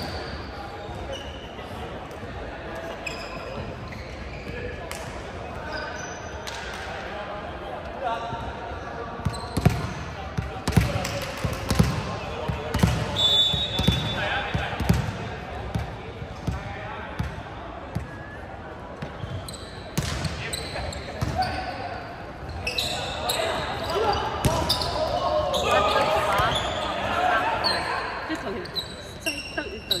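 Volleyball being bounced and hit in a large sports hall: a run of sharp thuds and knocks in the middle, with players' voices calling out throughout and louder shouting near the end, all echoing in the big room.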